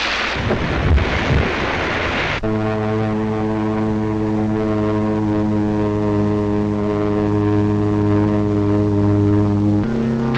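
A rushing noise for the first two seconds or so, then a propeller aircraft engine drone that cuts in suddenly and holds one steady pitch, shifting just before the end.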